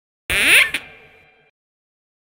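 A short electronic intro sting: a loud burst with a rising sweep, a second short hit just after it, then a ringing tail that fades out over about a second.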